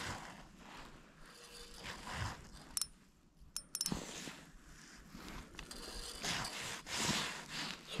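Spinning reel on a short ice-fishing rod being handled and wound: small mechanical clicks and scraping, mixed with rustling of gloves and jacket.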